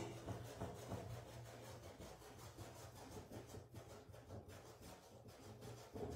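Faint scratchy rubbing of a paintbrush worked back and forth over fabric, blending wet red paint, over a low steady hum.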